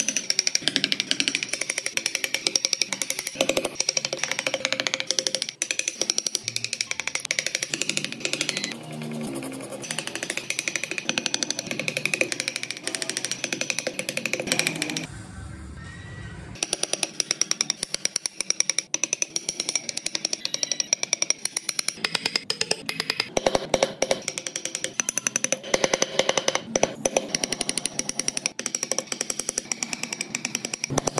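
Hand chisel and gouge cutting into Fokienia wood: a quick run of short scraping cuts and taps that stops briefly about halfway through, then resumes.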